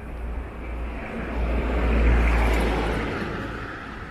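A vehicle passing by: a rumbling noise that swells to a peak about two seconds in and then fades away.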